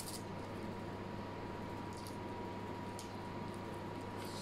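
Soft wet mouth sounds of someone eating fried instant noodles with chopsticks: a few brief slurping and chewing smacks about two and three seconds in, over a steady background hum.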